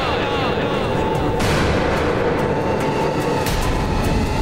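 Dramatic soundtrack effects over background music: a rushing swell that rises about a second and a half in, then a deep rumbling boom near the end.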